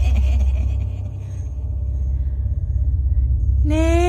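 Deep, steady low rumble of a horror sound-effect drone, with the tail of a rhythmic cackling laugh fading at the start. Near the end a long, slightly rising held note comes in.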